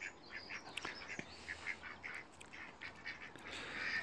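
Faint bird calls: short, scattered chirps and calls from birds in the background.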